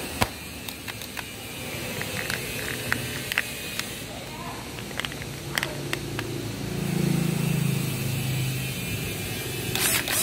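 Sharp plastic clicks and knocks as a Panasonic EZ6507 12 V cordless drill-driver is handled and its battery pack is pushed into the handle. Under them runs a low steady hum that swells for a couple of seconds about seven seconds in.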